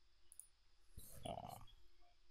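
Two faint computer mouse clicks, about a third of a second in and about a second in, against near silence.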